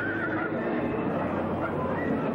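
A horse whinnying once, a short quavering call right at the start, over a crowd talking.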